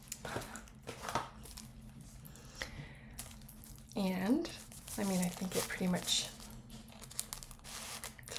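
Paper gift wrapping crinkling and rustling as the package is handled and opened, with short tearing sounds. A few short wordless vocal sounds come about halfway through.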